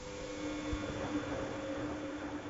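Bosch Logixx WFT2800 washer dryer's drum motor starting a tumble in the wash phase, a steady hum that comes in suddenly, over the slosh of sudsy water and laundry in the drum.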